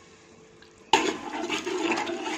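Metal slotted spoon stirring watery prawn masala gravy in a metal pot, a splashing slosh of liquid that starts suddenly about a second in.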